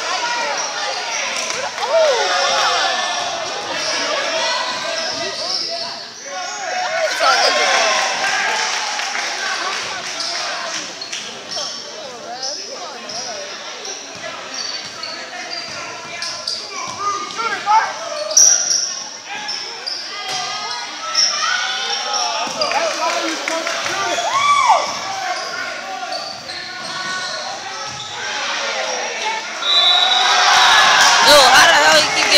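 Basketball dribbled and bounced on a gymnasium's hardwood court in repeated sharp thuds, over continuous chatter and calls from players and spectators.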